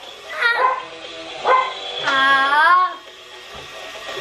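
A dog giving two short barks, then a longer wavering howl of about a second.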